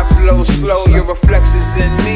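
Hip hop music: rapping over a beat of sharp drum hits and a deep bass line.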